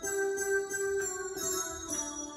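Electronic keyboard playing a melody with the right hand: a held note with several brighter notes struck over it, stepping down to a lower held note near the end.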